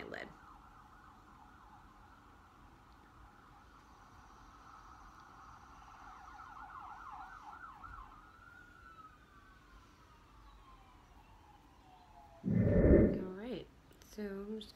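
A faint siren warbles rapidly, then winds down in one long falling tone. A brief, much louder noise comes near the end.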